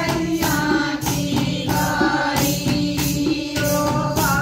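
Group of women singing a Haryanvi jakdi folk song together, accompanied by a dholak drum and a clay pot played as a drum, with clapping and jingling percussion keeping a steady beat.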